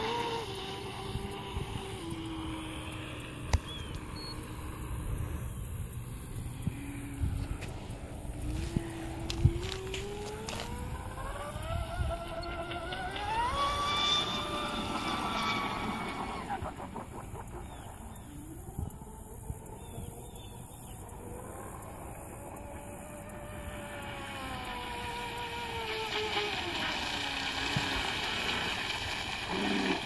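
Rivercat RC catamaran boat's brushless electric motor whining at speed on a 6S battery, its pitch rising and falling several times as it speeds up, passes and turns, with the hull's rush over the water beneath it.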